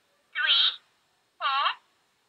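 VTech Cuddle & Learn Pal plush toy's recorded voice playing through its small built-in speaker: two short, high-pitched, wordless voice-like sounds about a second apart.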